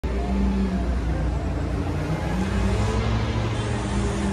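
City street traffic: a steady low rumble of vehicle engines running along the street.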